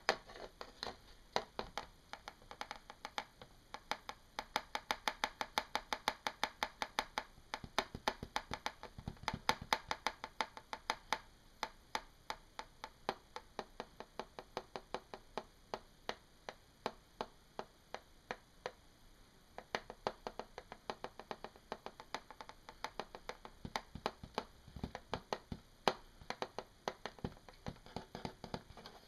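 Fingertips tapping on a clear textured plastic sheet: quick, irregular clicks, several a second, thinning out in the middle and picking up again about twenty seconds in.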